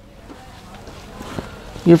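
Rustling of cloth blouses being handled and picked up: a soft swishing that builds toward the end, with a couple of faint clicks.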